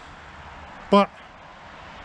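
Steady low outdoor roar coming from all around, a constant rumble like distant thunder, with road traffic mixed in.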